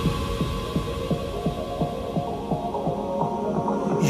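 Electronic dance music with the treble filtered away, leaving a kick drum beating about three times a second under short stepped synth notes. A louder new track with a held bass and synth chord comes in right at the end.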